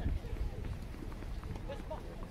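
Faint voices of people talking, with a few light knocks and a steady low rumble underneath.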